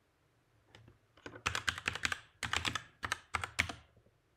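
Typing on a computer keyboard as a password is entered: a few keystrokes about a second in, then quick runs of clicks that stop just before the end.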